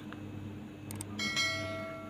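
A short mouse-click sound effect, then a bell-like chime rings out with several pitches together and fades over about a second and a half: the sound effect of an animated subscribe-and-notification-bell overlay.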